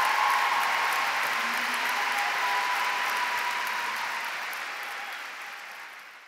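Audience applauding, a dense steady clapping that gradually fades away near the end.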